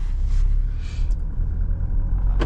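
Mahindra Scorpio N diesel SUV driving along a road, heard from inside the cabin: a steady low rumble of engine and road noise.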